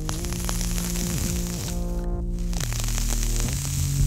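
Background music with sustained tones that glide down in pitch, over a hissing sizzle from a freshly built 1.2-ohm kanthal microcoil with cotton wick on a rebuildable e-cigarette atomizer being test-fired. The sizzle breaks off briefly about two seconds in.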